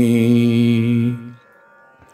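A man chanting a devotional prayer, holding one long, steady note that fades out just over a second in.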